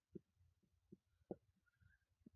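Near silence, broken by three faint, short, low taps of a stylus on a touchscreen as handwriting is written.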